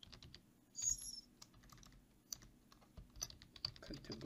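Computer keyboard typing: a run of irregular, fairly quiet key presses, with a short hiss about a second in.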